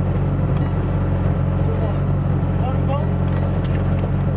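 Rally car engine idling steadily, heard from inside the cabin, with faint voices in the background.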